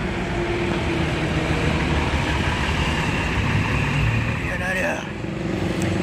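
Sinar Jaya intercity coach driving past at close range: steady engine and tyre noise.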